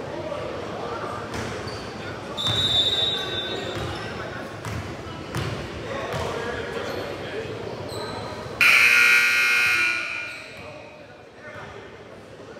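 Gym scoreboard buzzer sounding once for about a second and a half near the end, the loudest sound, over basketballs bouncing and voices echoing in the gym. A short, high, whistle-like tone sounds about two and a half seconds in.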